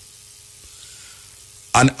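Faint steady hiss of the recording's background noise, with a faint hum under it; a man's voice comes back in near the end.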